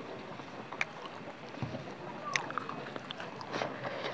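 Close-miked chewing of food: a few short, sharp wet mouth clicks and smacks over a steady hiss, with one low soft thump about halfway through.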